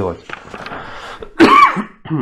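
A man clears his throat once, loudly, about one and a half seconds in.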